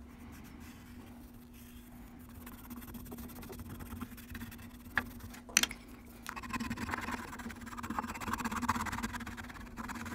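Quiet scraping and rubbing of a metal embossing tool and pencil point pressed along the lines of a thin copper sheet, with two light clicks near the middle and steadier scraping in the second half, over a faint steady hum.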